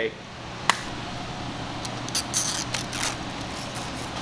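Vinyl wrap film being worked over a car door panel: one sharp click about a second in, then a few short scratchy rustles over the next second.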